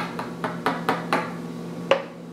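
A quick series of light, sharp knocks, about four a second for six knocks and then one more near the end, on a hard surface: a visitor's knock at the door in a toy play scene.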